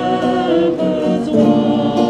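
A Christmas carol sung by a small group of voices, accompanied on a Yamaha MOTIF keyboard and acoustic guitar, with long held notes.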